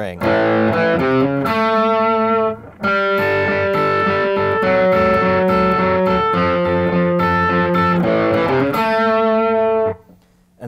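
Electric guitar playing a bluesy rock riff in A, mixing an A power chord with single notes, each ringing with many overtones. There is a brief gap just before three seconds in, and the playing stops abruptly at the end.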